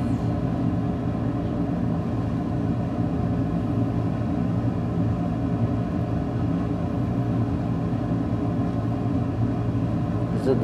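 A steady low machine hum that does not change in pitch or level.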